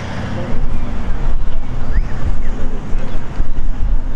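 Wind buffeting the camera microphone: a loud, gusty low rumble that jumps up about half a second in and carries on.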